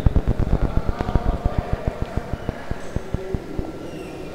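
Dense, irregular low crackling thumps, like a microphone being handled or rubbed, thinning out and fading over the few seconds.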